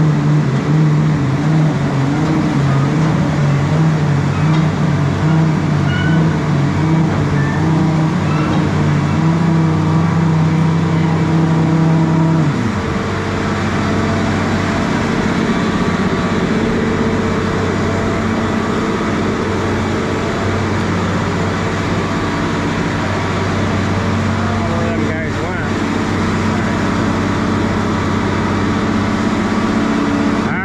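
Nuhn sand bedder's engine and spreader running steadily, the pitch stepping up and down a little. About twelve seconds in, it drops suddenly to a lower, steady speed.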